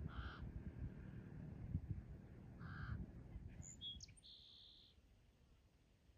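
Two short bird calls, caw-like, about two and a half seconds apart, then a few higher chirps and a brief high note around four seconds in.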